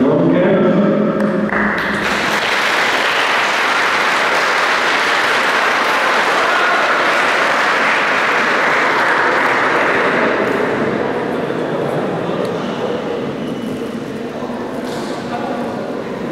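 Audience applauding, breaking out suddenly about a second and a half in, staying full for several seconds, then dying away toward the end.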